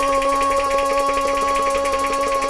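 Instrumental Kashmiri folk music: a steady held melody note over fast, even hand drumming, with no voice.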